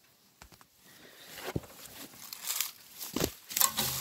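Dry grass and stalks rustling and crackling close to the microphone, in short irregular bursts that grow louder in the second half.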